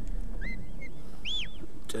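Sheepdog handler's whistle commands to his dog, each whistle arching up and down in pitch. There are two short, lower whistles about half a second in, then a louder, higher one near the middle.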